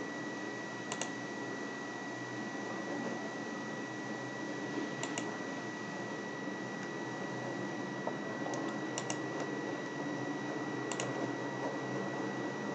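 A handful of faint clicks from working a laptop computer's controls, some in pairs, about a second in, near five seconds, and around eight, nine and eleven seconds. They sit over a steady hiss with a thin, high, steady whine.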